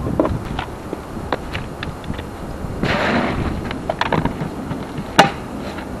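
Plastic sap buckets being handled and feet shifting in dry leaf litter: scattered clicks and rustles, a longer rustle about three seconds in, and one sharp click near the end.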